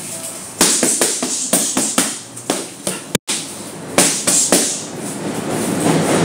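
Boxing gloves striking focus mitts in a fast combination: a rapid string of sharp smacks, with a brief gap a little after three seconds. A low rumble from a passing subway train rises near the end.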